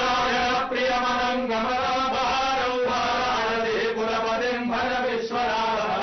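Hindu priests chanting Sanskrit mantras in a steady, sung recitation with long held notes.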